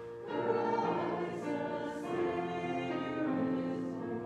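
A church congregation singing a slow hymn together in held notes, with keyboard accompaniment.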